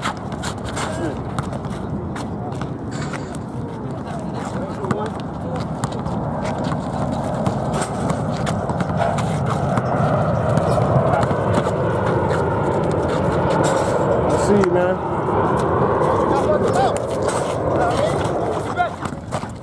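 Many voices chattering and calling across outdoor basketball courts, a steady blur of players with no single voice standing out. Through it come scattered sharp knocks and scuffs of basketballs bouncing and sneakers moving on the asphalt.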